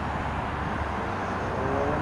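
Steady low outdoor rumble of background noise with no distinct event; faint pitched tones come in near the end.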